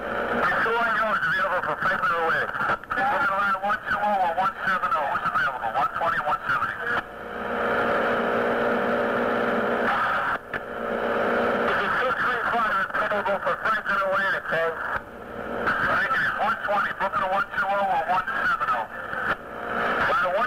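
Fire department two-way radio traffic: clipped, narrow-band voices over the dispatch channel, too garbled to make out. About seven seconds in the voices give way for a few seconds to a steady hiss and hum of an open channel before the transmissions resume.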